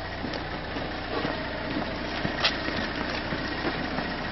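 Car engine idling with a steady low hum, under street noise from a group of people moving on foot, with one sharp click about two and a half seconds in.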